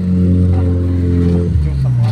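A motor vehicle engine running steadily, changing pitch about one and a half seconds in.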